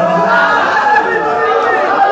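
Several men's voices singing and chanting together into a microphone: held sung notes of a devotional ghazal give way about half a second in to a tangle of overlapping voices.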